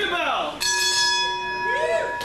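Wrestling ring bell struck once to start the match, ringing on with a steady metallic tone for about a second and a half. Voices shout around it.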